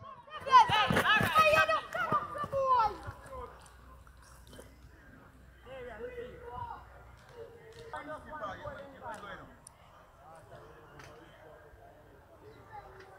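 Players' voices shouting and calling across an outdoor cricket field, loudest in the first three seconds, then fainter bits of talk.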